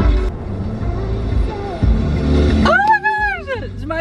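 Car radio playing a song inside the car, with a voice holding a long note that rises and falls near the end.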